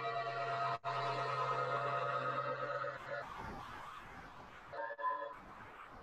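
Modular synthesizer jam heard over lo-fi video-call audio: a sustained droning chord over a low hum, briefly dropping out just under a second in, gives way around three seconds in to a noisy wash, then short pulsing tones near the end.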